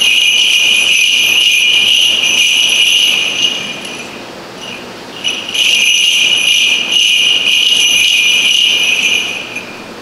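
Small bells on a swinging censer jingling as the priest incenses the Gospel book, in two long bouts of swinging with a quieter gap of under two seconds between them.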